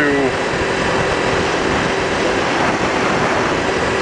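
Kawasaki Ninja 250's parallel-twin engine running at a steady cruise, heard through a helmet-mounted microphone under a wash of wind and road noise, with a faint steady tone through the middle.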